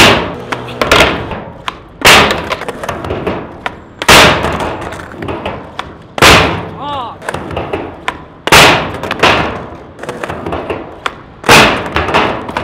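Skateboard repeatedly smacking down on a steel bank and stone paving, about six loud hits roughly two seconds apart. Each hit is followed by wheels rolling out over the stone.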